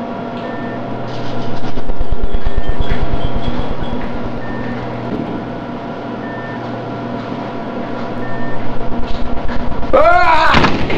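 A loud, steady droning hum with a short high beep about every two seconds. It swells twice into a fast-throbbing low pulse, the second swell building near the end.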